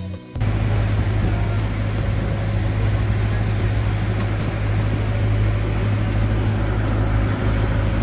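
A boat's engine running steadily and loudly, a constant deep hum under a noisy drone; it cuts in suddenly just after the start, so loud that it drowns out talk.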